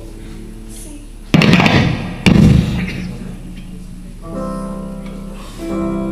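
Acoustic-electric guitar played through a PA as a band begins: two loud strums about a second apart, then held chords ringing from a little past the middle.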